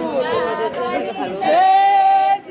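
Women's voices singing a traditional song together, ending in a long held high note.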